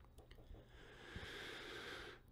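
Faint steady hiss that rises a little under a second in, over quiet room tone.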